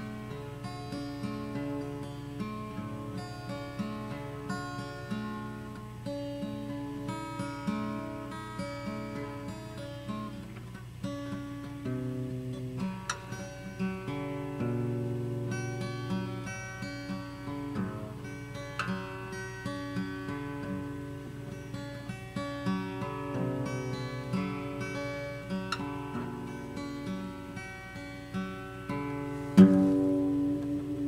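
Solo acoustic guitar playing a slow song, chords picked out note by note in a steady repeating pattern. There is a sudden louder strike of the strings near the end.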